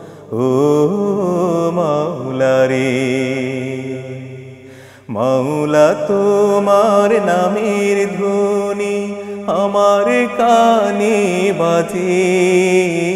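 A man singing a slow Bengali Islamic song (gojol) unaccompanied but for a steady low hum, his long held notes wavering with ornaments. One phrase fades out a little before halfway, and a new phrase begins about five seconds in.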